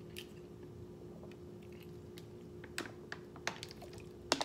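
A person drinking from a thin plastic water bottle: small swallowing clicks and the crackle of the plastic, sharper and more frequent in the second half.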